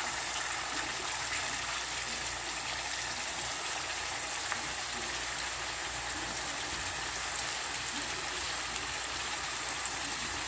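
Slices of Japanese sweet yam (camote) frying in shallow oil in a pan: a steady sizzle, with a few faint pops.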